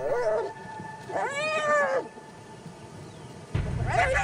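Spotted hyenas crying out in a clan fight as a male is bitten: a short cry at the start, one long squeal that rises and falls about a second in, then a rising cry over a low rumble near the end.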